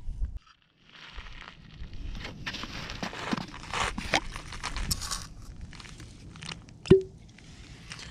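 A vintage Swedish army flask being opened by hand: the cup twisted off and the old cork stopper worked out, giving crackling, crunching scrapes and small clicks as the cork crumbles. A single sharp squeaky pop comes near the end.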